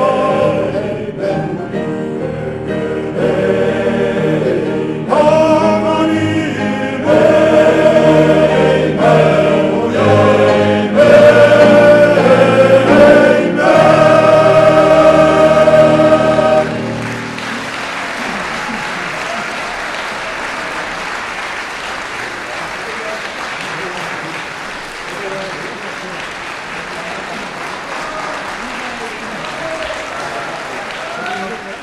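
Male choir singing with piano accompaniment, growing louder toward a held final chord that cuts off about two-thirds of the way through. The audience then applauds steadily for the rest of the time.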